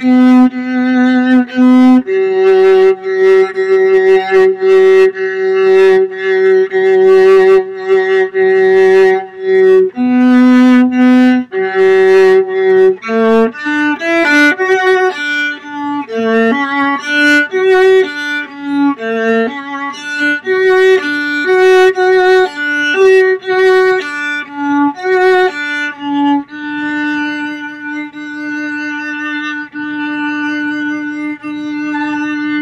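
Solo viola, bowed, playing its part alone: long held notes at first, then a stretch of quicker moving notes, settling on a long held note near the end.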